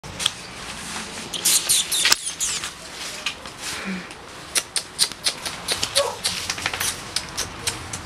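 A small dog's claws clicking and scrabbling on a tiled floor as it scampers and spins, in quick irregular clicks with a couple of busier flurries.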